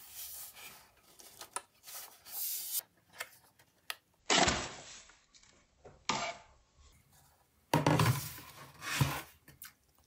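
Handling noise as a Mac mini logic board assembly is pushed out of its aluminium case and lifted free: scraping, clicks and rustling in several short bursts, the loudest about four seconds in and again near the eight-second mark.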